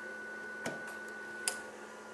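Two short clicks, a little under a second apart, as the green ON pushbutton on an electrical training panel is pressed to switch in the grid connection. A faint steady high tone runs underneath.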